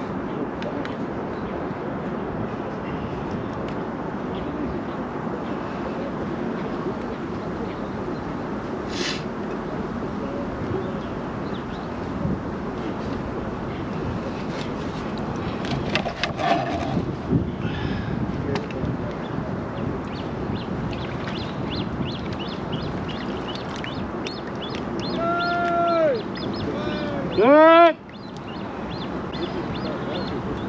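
Steady wind and lapping-water noise, with a few light clicks of fishing tackle being handled about halfway through. Near the end come two loud arching honks from a goose, the second one the loudest.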